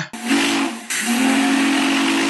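Steam whistle blowing over loud hissing steam: a short blast, then a longer steady one from about a second in.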